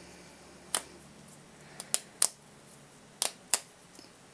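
About six short, sharp clicks at irregular intervals, some in pairs, over a quiet room background.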